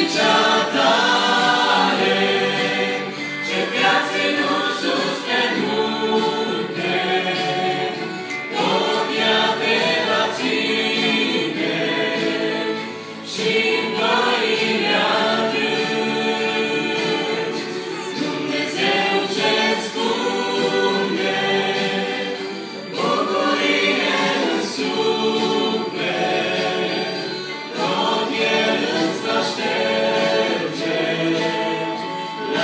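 A small mixed group of men and women singing a worship song together in harmony into microphones, in sustained phrases with short breaths between them.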